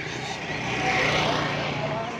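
A motor vehicle running nearby, its noise swelling to a peak about a second in and then easing off over a steady low hum.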